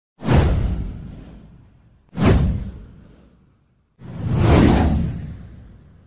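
Three whoosh sound effects for an animated title-card intro. The first two strike suddenly and fade away over about two seconds each; the third swells up more gradually about four seconds in and then fades out.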